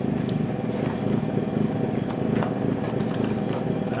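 Steady mechanical rumble of road works outside, a jackhammer breaking up the road, with a few faint clicks from a model airplane box being handled.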